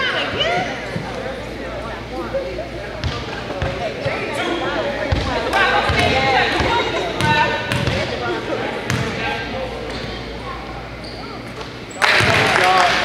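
Basketball bouncing on a hardwood gym floor, several separate thuds from about three to nine seconds in, over people talking in the gym.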